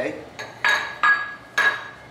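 Metal kitchen utensil clinking against dishware, about four sharp clinks with a short ring, the loudest from about half a second in.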